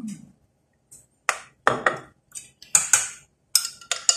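Metal spoon clinking against a steel pot and a glass jar while serving tapioca pearls: a run of sharp, ringing clinks that starts about a second in, roughly two or three a second.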